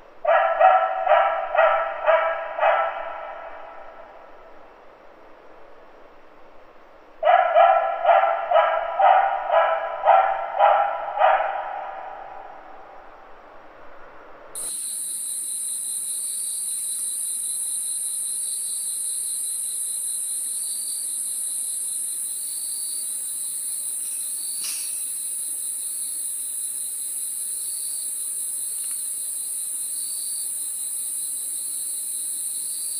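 A dog barking rapidly in two runs of a few seconds each, with a pause between them. About halfway through, a steady high-pitched chirring starts and keeps on.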